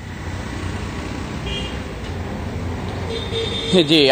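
Street ambience: steady traffic rumble with a brief high horn toot about a second and a half in, then a man's voice starting near the end.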